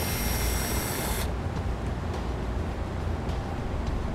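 Cordless drill/driver spinning a 10 mm socket to loosen the mirror's mounting nuts: a high-pitched whir that stops abruptly about a second in. A low steady hum continues under it.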